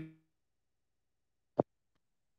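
A voice cut off mid-word, then dead silence from a video-call audio dropout on a choppy internet connection, broken once by a short click about one and a half seconds in.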